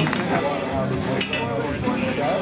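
Spectators cheering and talking after a good lift, with sharp metallic clinks of loaded barbell plates at the start and again about a second in.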